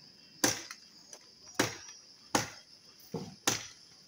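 A hand-held blade chopping into a tree branch: five sharp knocks, most about a second apart, the last two close together.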